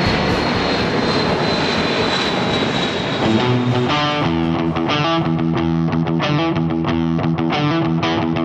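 Jet aircraft noise with a thin high whine that sags slightly in pitch, giving way about three seconds in to guitar music with steady chords.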